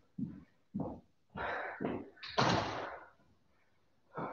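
A man breathing hard after a high-intensity interval, with four loud breaths over about three seconds. The last is the loudest, a long noisy exhale.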